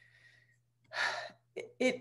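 A woman takes one audible breath in, about half a second long, during a pause in her speech, then starts speaking again near the end.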